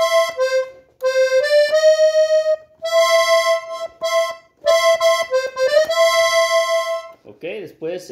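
Piano accordion's treble keyboard playing a slow melodic phrase in four short runs with brief breaks between. Quick grace notes lead into some of the held notes.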